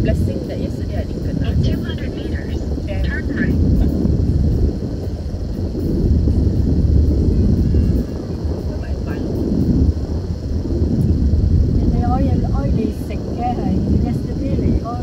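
Steady low rumble of a car's engine and tyres heard from inside the moving car's cabin, with faint voices at times.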